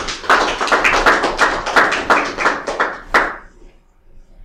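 A small group of people clapping, a short round of applause that dies away about three and a half seconds in.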